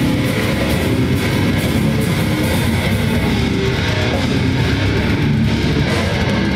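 Metal band playing live at full volume: distorted electric guitar, bass and drums in a dense, unbroken wall of sound.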